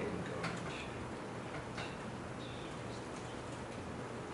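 A few faint, scattered clicks from a laptop being operated, over a steady low room hum.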